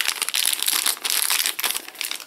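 Thin clear plastic bag crinkling as a camera battery is unwrapped from it by hand: a dense run of crackles that thins out near the end.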